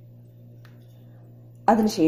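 A faint steady low hum, with one soft click a little over half a second in; a voice starts speaking near the end.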